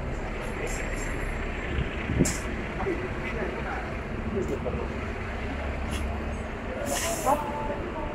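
Busy shopping-street ambience: a steady low rumble with indistinct chatter of passers-by, a few light clicks, and a short hiss about seven seconds in.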